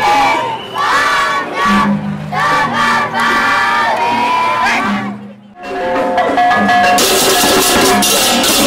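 A group of voices chanting together over music with a low held note. About five and a half seconds in the voices drop out briefly, then the music goes on with held notes, and bright, crisp percussion comes in near the end.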